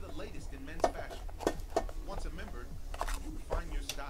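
Sharp clicks and taps of a small cardboard trading-card box being handled and set down on a table, the loudest about a second in, over faint talk in the background.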